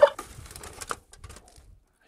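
The last moment of a cartoon turkey gobble sound effect, then irregular crinkles and crackles of aluminium foil being handled around a Dutch oven. These thin out to faint rustles after about a second.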